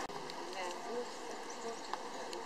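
Quiet outdoor background: a steady high hiss with faint, distant voices and a single click near the end.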